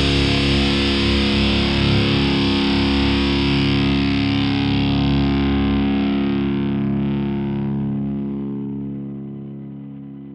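Heavily distorted electric guitar, a Schecter C-1 Classic through a Line 6 processor, holding a final chord over bass as a metal song ends. The high end dies away first, then the whole chord fades out over the last few seconds.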